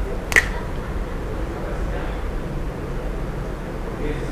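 A single sharp click about a third of a second in, over a steady low hum and room noise.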